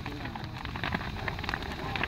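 Large bonfire of stacked wooden planks burning fiercely, crackling with many irregular sharp pops over a steady rushing of flame.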